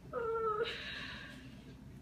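A short, high-pitched wordless cry, slightly falling in pitch and lasting about half a second, followed by a faint hiss.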